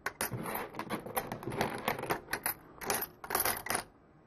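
Loose coins dropped by the handful into a 3D-printed plastic coin sorter's inserter tube, clattering and clinking against the plastic and each other in a run of quick clicks. The clatter stops just before the end.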